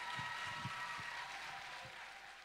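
Audience applause with the last held chord of the song's backing track ringing on and fading out.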